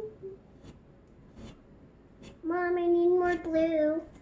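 A child's voice singing two held notes in the second half, the second a little lower than the first. A few faint taps come before it.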